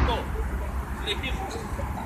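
Outdoor pitch-side ambience: a steady low rumble with faint, distant voices of children and a coach.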